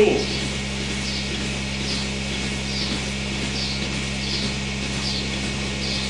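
Steady hum of milking-parlour machinery, with a faint hiss that repeats evenly a little more than once a second.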